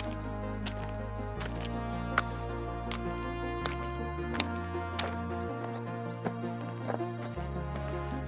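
Background music: sustained low notes that shift every second or two, under a steady beat of sharp hits about every three-quarters of a second.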